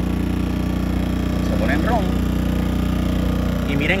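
A-iPower SC2000i inverter generator's small four-stroke engine running steadily with a low, even hum, just after a start, its choke dial turned to run.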